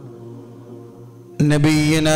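A man's voice chanting the Arabic opening praises of an Islamic sermon in long held, level notes, starting loud about one and a half seconds in. Before it, a faint steady hum.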